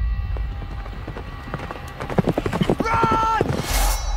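A quickening run of clattering footfalls on stone, like hooves or running feet. About three seconds in there is a short held call or shout, and a loud rising whoosh comes just before the end.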